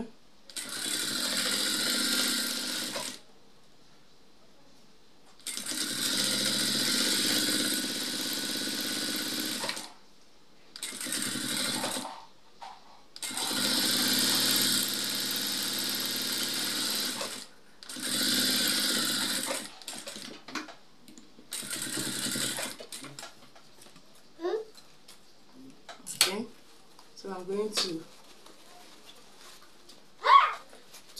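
Industrial lockstitch sewing machine stitching a curved seam in stop-and-go runs. It runs about seven times, each run lasting one to four and a half seconds with brief pauses between them as the fabric is turned along the curve, then stops for good a little over two-thirds of the way in.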